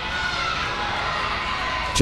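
Arena crowd cheering and calling out, a steady wash of many voices.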